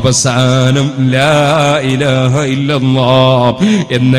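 A man's voice chanting in long, wavering melodic phrases, broken by short breath pauses, over a steady low hum.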